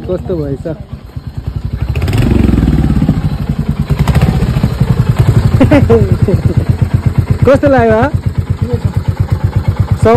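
Motorcycle engine idling with a fast, even putter. It picks up briefly about two seconds in, then settles to a steady idle, with voices over it.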